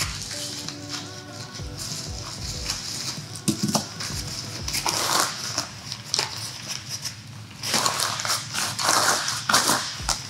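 Rustling and crinkling of a tripod's fabric carry bag and plastic wrapping as it is unpacked by hand, loudest about five seconds in and again near the end. Quiet background music plays underneath.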